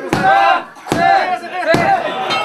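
Referee's hand slapping the floor mat three times, about 0.8 s apart, counting a pinfall, with voices shouting along with the count.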